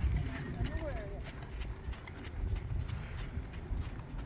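Hoofbeats of a ridden horse trotting on soft sand arena footing, a run of dull, uneven thuds.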